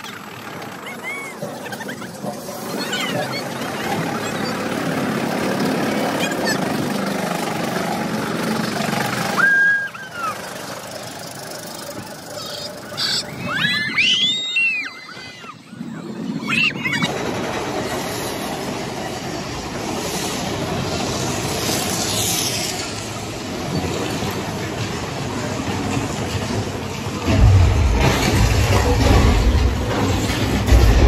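Roller coaster train running along its track, a steady rushing rattle with riders screaming and whooping in high glides about halfway through. A loud deep rumble near the end.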